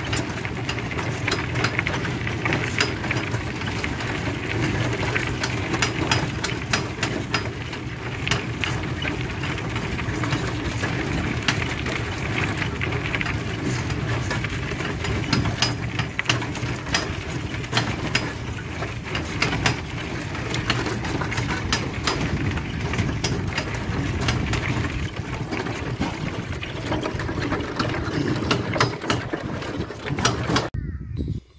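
An electric trike towing a homemade camper trailer along a leaf-covered dirt trail: a steady rolling rumble with frequent small clicks and rattles.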